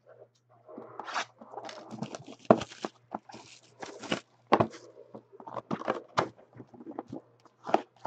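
Sealed cardboard trading-card hobby boxes being handled and moved: a stretch of rustling from the plastic wrap and cardboard, then several sharp knocks as boxes are lifted and set down.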